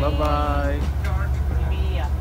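Steady low engine drone of a small passenger water bus under way. A voice speaks over it in the first second and briefly again just after.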